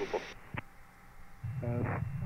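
Air traffic control radio exchange heard over the cockpit audio. A transmission ends, a single click comes about half a second in, and after a short lull a low hum about a second and a half in opens the next transmission.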